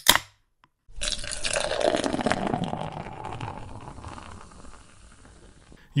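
Beer poured into a glass, a fizzing pour that starts about a second in and fades away over the next few seconds, after a short click at the very start.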